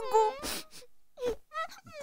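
A cartoon character's crying voice: a high, falling wail at the start, then a breathy sob and a few short whimpers.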